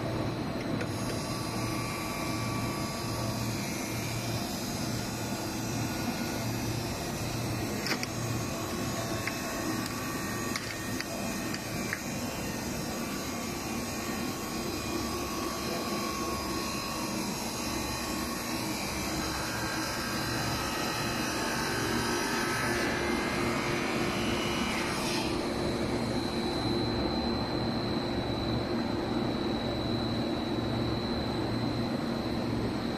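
A PVC foam board extrusion line running: a steady mechanical hum and whir with several held low tones and a few light clicks. A high, thin whine joins about five seconds before the end.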